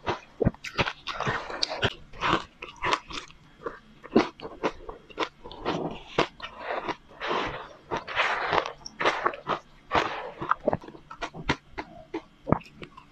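Close-miked crunching and chewing of a mouthful of crushed, powdery ice coated in matcha powder: a fast, irregular run of sharp crunches mixed with softer grinding.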